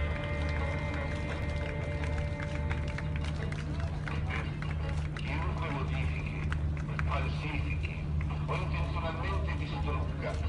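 A low throb pulsing about once or twice a second over a steady low hum, from the ship's engine as it comes alongside. People's voices talking join it from about four seconds in.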